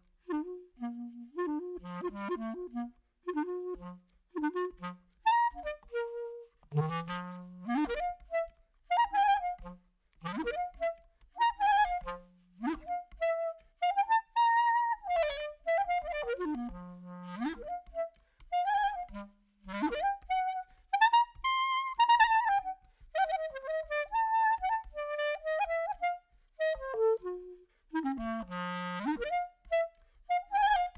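Solo clarinet playing a slow klezmer zhok melody in phrases, with long held notes that slide up and down in pitch and short breaths between phrases.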